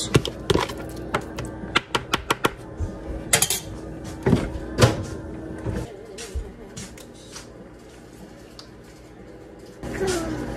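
A metal spoon scraping and tapping a plastic food container as cooked ground meat is scooped out: a quick run of sharp clicks and knocks in the first few seconds, then a few heavier knocks. A steady low hum runs under them and stops about halfway through.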